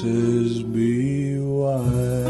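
A man's voice holding a long, wordless sung note over acoustic guitar and upright bass, the pitch bending slightly before it gives way near the end.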